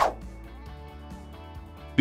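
Background music with steady held tones. Right at the start comes a short whoosh sweeping down in pitch, the loudest sound: a section-transition effect as a title card appears.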